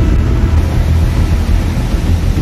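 A steady, loud low rumble with a faint hiss over it, with no voices.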